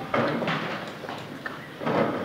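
Indistinct voices in a classroom, in short broken bursts: one just after the start and another near the end.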